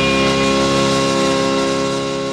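Closing chord of a late-1960s garage-psych rock record, held steady on Vox organ with fuzz, with no drums, starting to fade near the end.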